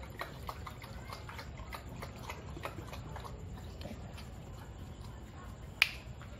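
American Bully dog lapping water from a plastic bowl, about three or four laps a second, tailing off after about three and a half seconds. A single sharp click near the end is the loudest sound.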